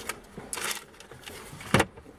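Hyundai Elantra's plastic glovebox lid being pushed shut by hand: a brief rustle of the plastic bag inside, then one sharp clack as the lid latches, near the end.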